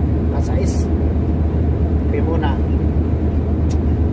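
Steady low drone of a truck's engine and road noise heard inside the cab while cruising at highway speed.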